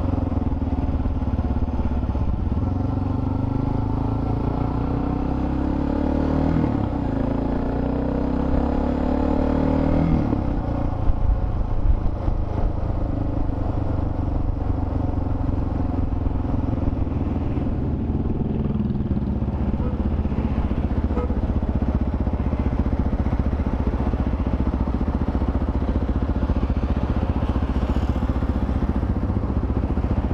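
Motorcycle engine running under way, its pitch rising and shifting through the first ten seconds, with a couple of sharp knocks about eleven seconds in. It then settles into a steadier, lower note as the bike slows toward an intersection.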